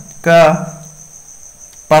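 A man's voice says one short word, then pauses. A steady high-pitched tone runs underneath the whole time.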